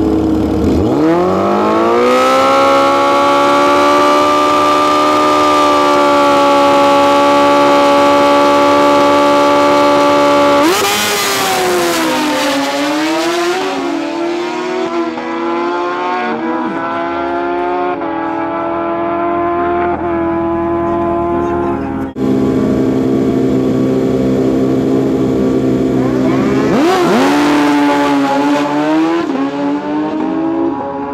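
Drag-racing street motorcycle engines at high revs. The note climbs in the first second or two and holds steady for about ten seconds during a pass. Then comes a stretch of wavering revs that settles to lower, steadier running. After a sudden change about two-thirds of the way in, engines are held at high revs again, with a burst of revving near the end.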